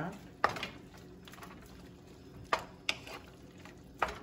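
A spoon stirring chicken and sliced tomatoes in a nonstick pan, with three sharp knocks of the spoon against the pan: one about half a second in and two close together near the three-second mark.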